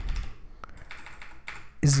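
Typing on a computer keyboard: a run of separate keystroke clicks as a line of code is typed and corrected.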